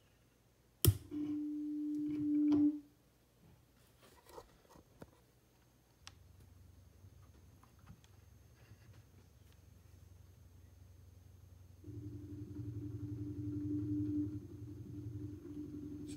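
Stepper-motor head of an electronic expansion valve heard through a mechanic's stethoscope: a sharp click about a second in, a short steady hum, then from about twelve seconds a steady electric hum over a low buzz as the valve motor is driven.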